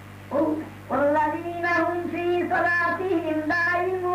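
A high voice chanting a melodic line in long held notes, starting with a short phrase and then singing sustained notes with brief breaks. A steady low electrical hum runs underneath.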